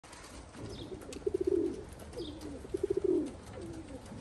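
Domestic pigeon cooing twice, about a second and a half apart. Each coo starts as a quick stutter that runs into a held low note and then slides down in pitch.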